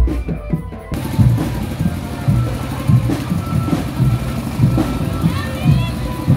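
Marching drum band playing, its bass drums beating about twice a second under a steady noise of the surrounding street; the sound changes abruptly about a second in, like a cut between takes.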